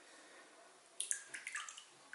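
Drops of Crep Protect Cure shoe-cleaning solution falling from a squeeze bottle into a small plastic tub of warm water: a few faint, sharp drips in the second half.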